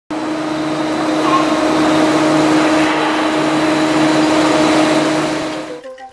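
Heavy construction machinery running steadily: a continuous mechanical drone with a low hum, cutting off abruptly just before the end.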